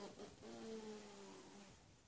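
A single drawn-out whine, a little over a second long and falling slightly in pitch, just after a sharp click.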